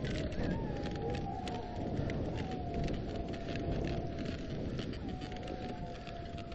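Dog sled moving over snow: a steady crackling hiss of runners and the moving team, with a thin high whine holding steady through it.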